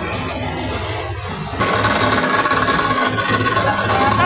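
Engine-driven rice milling machine running steadily with a low, even drone. Background music comes in abruptly about one and a half seconds in and plays over the machine.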